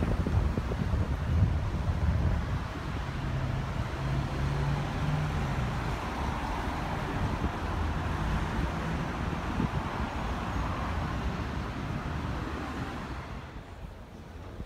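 Road traffic noise with a low engine hum that comes and goes, and wind buffeting the microphone.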